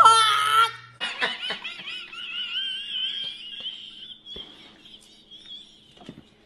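High-pitched, squealing laughter that wavers up and down for about three seconds after a second of speech, then trails off.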